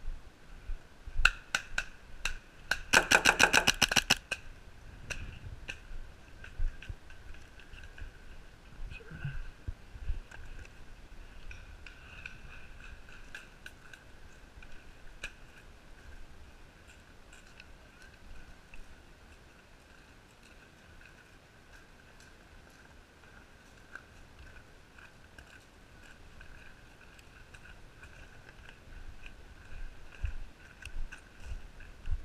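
Paintball marker firing a rapid burst of about twenty shots, roughly fourteen a second, a few seconds in, after a few single shots. Fainter scattered single shots follow.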